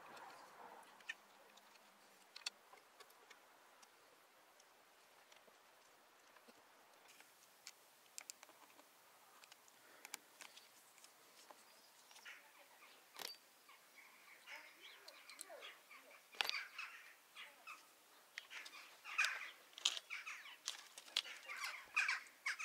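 Quiet, scattered clicks and taps of an Allen key and loosened metal stem bolts as a mountain bike's handlebar stem faceplate is undone. Bird calls come in the background through the second half.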